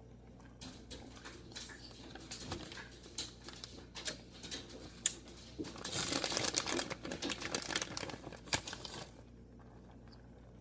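Plastic bag of shredded cheese crinkling as it is handled, loudest for about three seconds in the second half. Before that, scattered light rustles and clicks as handfuls of cheese are grabbed and sprinkled.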